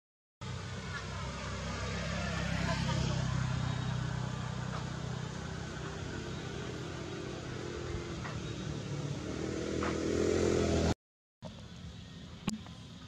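Motor vehicle engine running close by with a steady low hum, swelling about three seconds in and again near the end, as traffic passes. The sound starts and stops abruptly at edits.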